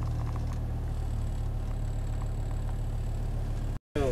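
A car engine idling: a steady low hum with no rise or fall, until it cuts off just before the end.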